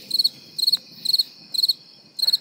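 Cricket chirping, about two short high-pitched trilled chirps a second, starting and stopping abruptly: the comic 'crickets' sound effect for an awkward silence.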